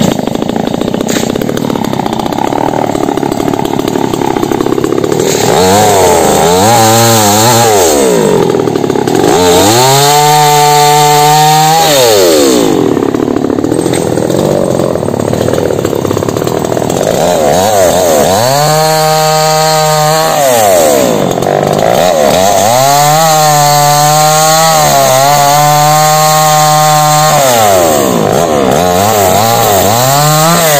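Two-stroke chainsaw sawing through the branches of a felled tree, its engine revving up to full throttle and dropping back again and again, about six times, with lower-pitched stretches as the chain bites into the wood.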